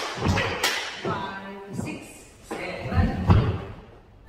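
Line dancers' feet stepping and stomping on a wooden studio floor: a run of sharp thumps that ring briefly in the hall, coming thick at first and then thinning out and quieting near the end as the dancers stop.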